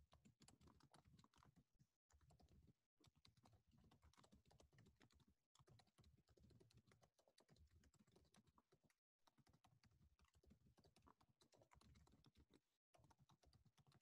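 Near silence: the video-call audio is gated almost to nothing, leaving only a very faint residue of room noise with a few brief total dropouts.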